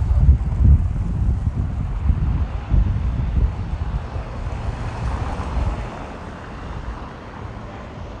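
Wind buffeting a handheld camera's microphone outdoors: an uneven low rumble that dies down in the second half, over faint street ambience.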